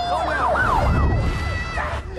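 An emergency siren sweeping rapidly up and down in pitch, over a low rumble, with a held shout during the second half.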